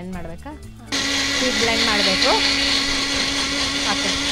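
Small personal electric blender switched on about a second in, running steadily at full speed as it blends a milkshake in its jar, with a steady hum under the motor noise.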